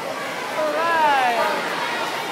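Spectators shouting and cheering a swimmer on, with one long falling yell about halfway in over a steady crowd hubbub.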